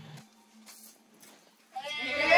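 Quiet faint hiss for most of the time; near the end a loud, wavering cry of voices breaks out, a group yelling.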